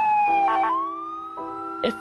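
Emergency vehicle siren wailing, its pitch sliding down and then rising again. Sustained music notes come in under it about a third of a second in.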